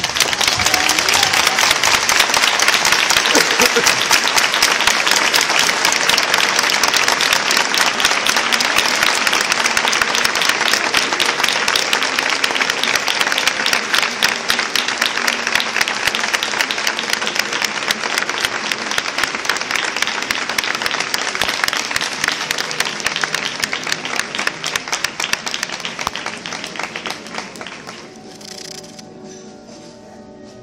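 A large crowd applauding loudly and continuously, breaking out suddenly and easing off slowly near the end.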